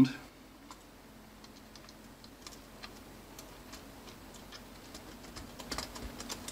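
Faint, scattered small clicks of wires being worked into the terminals of an ATX power-supply breakout board, over a faint steady hum.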